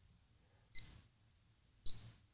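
Beeasy digital watch giving a short, high beep at each press of its mode button as it steps through its modes, twice, about a second apart.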